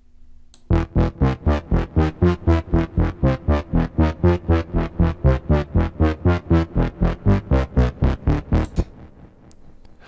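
Steinberg Retrologue 2 software-synthesizer bass from the Dark Mass expansion (8th Wave Bass with its arpeggiated Bass Vamp), played solo. It plays a driving pattern of short, even bass notes, about four a second, that move melodically through the chords. The pattern stops near the end.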